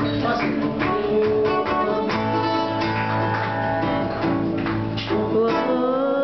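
Live acoustic guitar strummed in a steady rhythm, with a man's voice singing long held, sliding notes over it and rising into a new line near the end.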